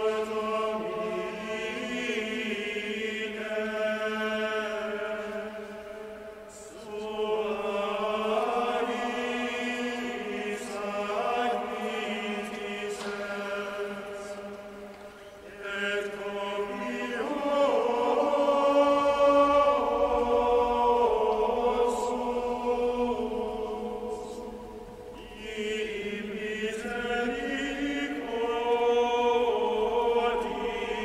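A choir sings the Mass's entrance chant in long phrases, with short breaks about six, fifteen and twenty-five seconds in.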